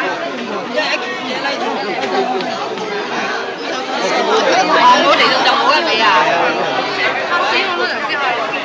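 Crowd chatter: many people talking at once, close around, with voices overlapping into a continuous babble.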